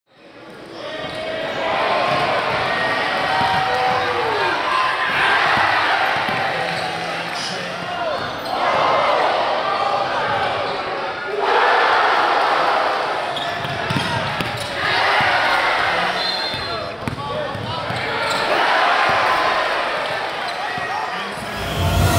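Live game sound of basketball in a gym: a ball being dribbled on the hardwood, sneakers squeaking, and crowd voices that swell up several times.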